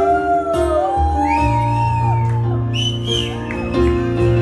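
Live acoustic punk-rock song between sung lines: acoustic guitar and keyboard holding steady notes, with a high wailing melody line that slides up and down in pitch.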